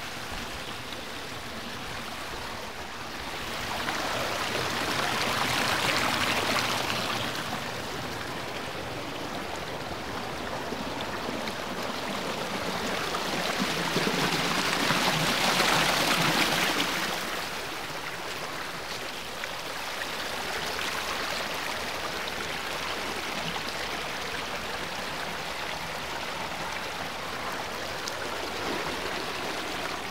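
Water of a small rocky stream running steadily and spilling over rocks. It swells louder twice, a few seconds in and around the middle.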